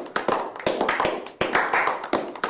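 A small group of people clapping their hands, several uneven claps a second overlapping.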